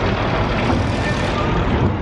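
Steady, loud vehicle and engine noise from trucks, cars and the ferry's machinery at a ship's loading ramp, an even rumble with no single event standing out.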